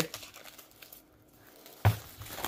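Plastic wrap crinkling as it is peeled off a Scentsy wax bar, with faint crackles and one sharp, louder crackle near the end.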